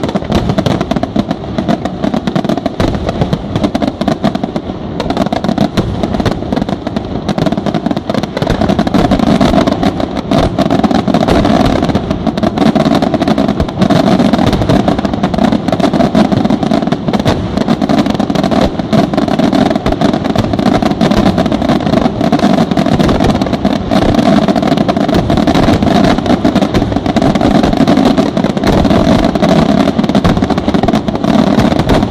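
Dense fireworks barrage: many aerial shells, rockets and fountains firing at once, their bangs and crackles running together into one continuous loud din that grows louder about ten seconds in.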